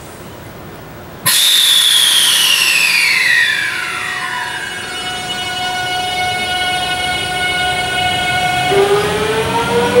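Series 383 electric train pulling away from the platform: its motor whine starts suddenly about a second in, with several tones gliding down, then holding steady, then rising again near the end as the train gathers speed.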